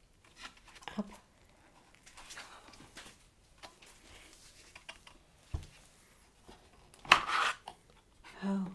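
Hands handling the plastic parts and packaging of a bench knife sharpener: scattered light rustles and knocks, a dull thump about five and a half seconds in, and the loudest, a short rustle about seven seconds in.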